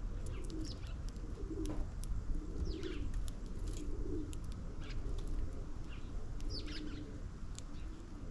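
Pigeons cooing in repeated low, rolling phrases, with short high chirps from small birds scattered over them.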